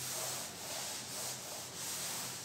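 A cloth wiping chalk off a blackboard in repeated back-and-forth strokes, a rubbing hiss that swells with each stroke.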